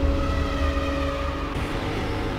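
Cinematic logo-intro sound design: a deep rumble under several held steady tones, easing off slightly toward the end.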